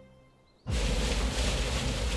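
A held music chord fades out to near silence, then about two-thirds of a second in the sound cuts suddenly to loud, steady machine noise: an opal-washing trommel drum running.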